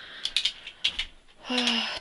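A few sharp light clicks and rattles in the first second, then a woman's voice sounding briefly near the end.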